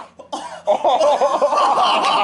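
A man crying out in pain from a sticky trap just ripped off his chest hair: a couple of short gasps, then drawn-out, wavering yells of "oh!".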